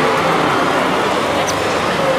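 Steady, loud din of a busy city street, mostly traffic noise.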